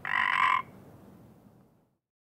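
A single short, buzzy, pitched croak lasting about half a second, then a faint hiss that fades away.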